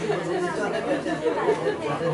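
Several people talking at once: overlapping chatter with no one voice standing out.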